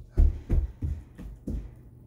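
Footsteps on a carpeted floor picked up through the floor: about five quick, dull thuds, each fainter than the last as the walker moves away.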